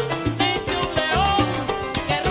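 Live salsa band playing: a bass line and percussion under a pitched melody line.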